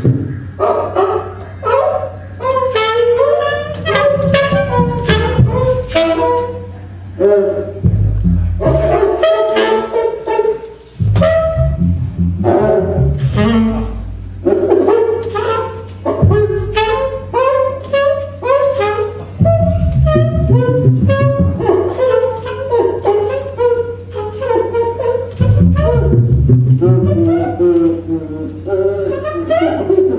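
Tenor saxophone playing fast, winding improvised runs in a live rock-jazz trio, with a low bass line coming in and dropping out under it in several stretches.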